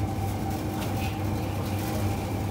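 Steady hum of supermarket refrigerated display cases and ventilation: a low drone with a thin steady whine above it, unchanging throughout.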